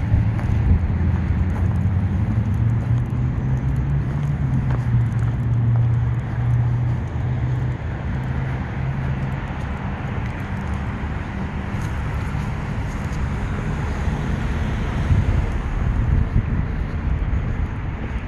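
A low vehicle engine hum over steady outdoor rumble; the hum fades away about halfway through.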